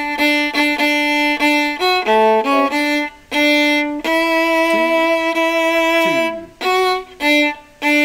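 Viola played with the bow: short repeated notes on one pitch, a quick run of changing notes, then a long held note that slides down at its end, followed by a few short notes. It is a replay of measures 78 and 79 of the viola part, played again to clean it up.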